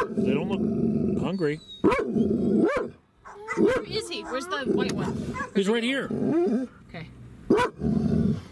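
Farm dogs barking and growling in short, repeated calls close by, over a vehicle engine running steadily underneath.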